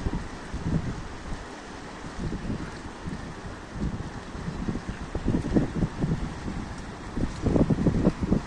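Wind buffeting a phone microphone in uneven gusts, stronger a little after halfway and near the end, over the steady rush of a fast-flowing river.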